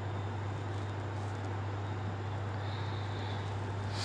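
Steady low hum over a constant background hiss.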